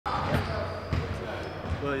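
Basketballs bouncing on a hardwood court floor in the background: a few separate thumps.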